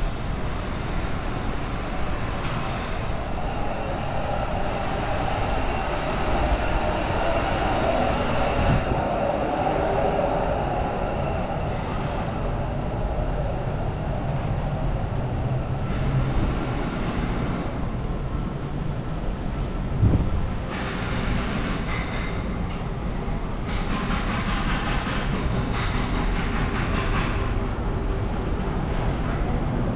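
Steady city street ambience with a constant low rumble, heard by a walking microphone. There is a brief louder bump about twenty seconds in.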